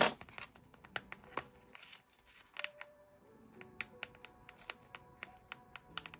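Quiet background music with many small ticks and light paper sounds, from sticker sheets and paper being handled and peeled.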